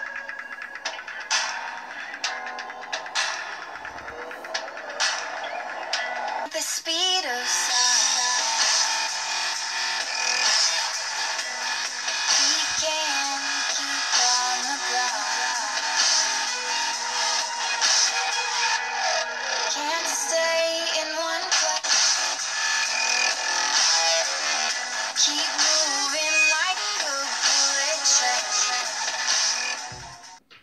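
An electronic dance music track plays at full volume through the Google Pixel C tablet's built-in side-firing stereo speakers, heard in the room. About seven seconds in, a sweep leads into a fuller, louder section that carries on steadily.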